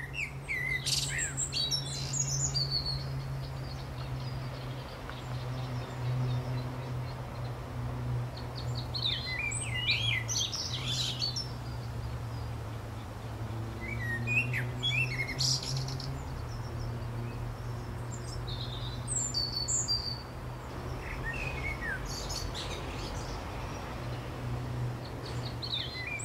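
Garden birds singing, with clusters of quick high chirps and warbling phrases coming every few seconds. Underneath is a steady low hum.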